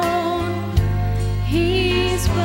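A woman singing a Christian solo into a handheld microphone over instrumental accompaniment with a sustained bass. Her held note fades early on, the accompaniment carries on alone, and she comes in on a new held note with vibrato about a second and a half in.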